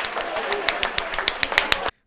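Crowd applause: many dense, irregular claps with faint voices in the background, cutting off suddenly near the end.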